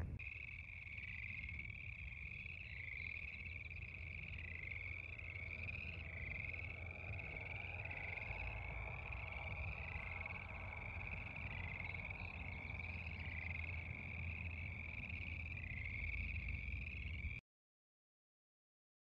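Frogs calling: a steady run of short, overlapping calls, a little more than one a second, over a low rumble. The sound cuts off suddenly near the end.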